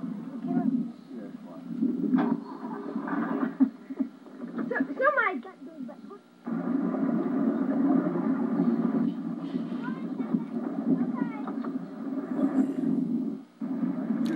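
A boat engine running steadily, heard through a TV speaker on an old home-video soundtrack, with voices calling over it. The sound cuts out briefly twice.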